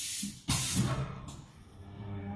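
Compressed air hissing from a pneumatic shoe-making machine: one hiss tails off at the start, then a second sudden hiss about half a second in fades away over about a second.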